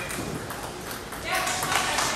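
Celluloid table tennis ball pinging and clicking off the table and paddles, over background chatter in a large hall; the crowd noise swells from about halfway through.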